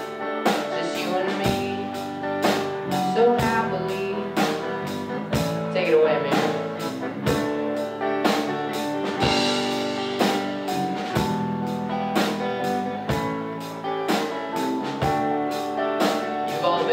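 Live rock band playing an instrumental passage on drum kit, electric guitar, electric bass and keyboard, with drum hits about twice a second and a cymbal crash about nine seconds in.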